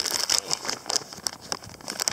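Clear plastic bag crinkling and rustling in rapid, irregular crackles as it is handled and opened.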